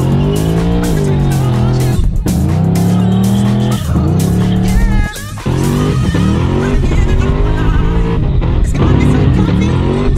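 Holden VF GTS's supercharged LSA V8 at full throttle, heard from inside the cabin. It revs up through the gears with sharp shifts about two, four and five seconds in, while the rear tyres spin and squeal.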